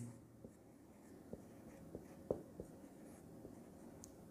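Faint sounds of a marker writing a word on a whiteboard: soft strokes and a few small ticks as the pen touches down.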